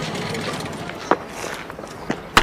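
Steady background noise with a single sharp click or knock a little after a second in.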